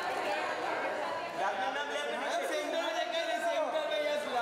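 Indistinct chatter of several overlapping voices, photographers and onlookers calling out.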